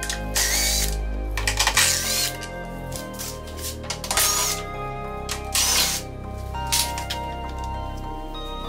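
A handheld power tool runs in about five short bursts, each about half a second, with a brief whine, while loosening the tail-light fasteners. Background music plays throughout.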